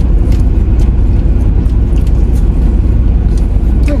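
Steady low rumble of a car heard from inside the cabin, with engine and road noise and no speech.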